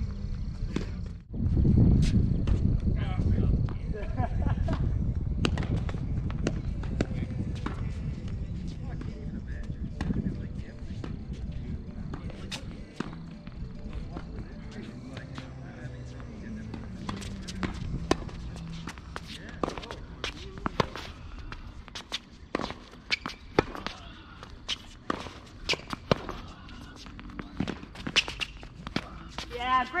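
Tennis rally on an outdoor hard court: sharp pops of racket strikes and ball bounces, with quick footsteps, coming thick and fast in the last twelve seconds. Before that, a low rumble is the loudest sound, peaking about two seconds in.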